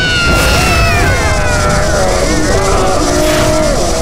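Animated-battle sound effects of two dragons' energy beams colliding: a loud, steady rumble under a long drawn-out cry that slowly falls in pitch, then wavers lower.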